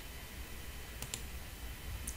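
Two quick computer mouse clicks close together about a second in, faint over a low steady hum.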